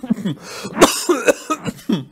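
A man coughing in a fit: several coughs in quick succession, the loudest about a second in.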